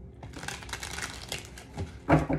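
A deck of tarot cards being shuffled by hand: a run of quick, soft clicks and rustles as the cards slide against one another.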